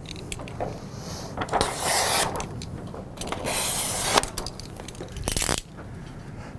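A hand cutter slicing across a laminating film's release liner: two long scraping swishes, with a few light knocks of handling, the last near the end.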